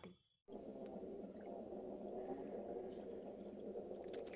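Steady, low background noise with no clear events, starting after a brief dropout to silence: room tone.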